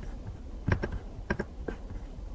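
Light clicking at a computer mouse and keyboard: about six short clicks, some in quick pairs.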